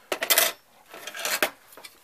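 Thin sheet-metal expansion-slot blank on a desktop PC case being worked loose, clinking and rattling against the steel chassis in two short bursts, the second about a second and a quarter in.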